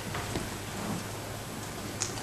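Faint rustling of sheets of paper being handled at a pulpit, over a steady background hiss.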